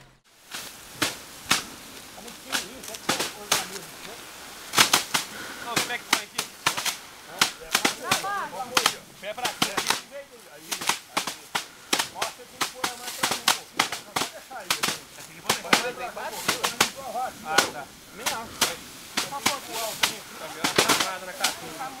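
Bundles of harvested rice stalks being beaten by hand against a wooden threshing table by several people at once: a continuous run of sharp, irregular thwacks as the grain is knocked off the stalks.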